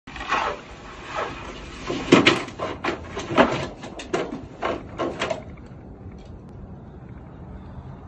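A series of about a dozen irregular knocks and bumps that stops after about five and a half seconds.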